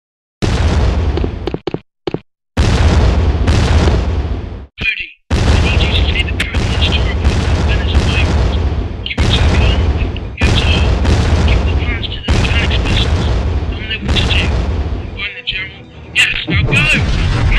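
Series of heavy explosion sound effects, starting after a short silence: a loud boom about every second, each fading out in a rumble, with wavering higher-pitched sounds over them.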